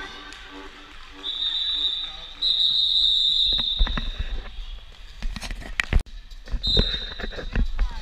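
Roller derby referee's whistle: two long blasts in the first half and a short blast near the end. Underneath are knocks and clatter of skaters and roller skates on the rink floor.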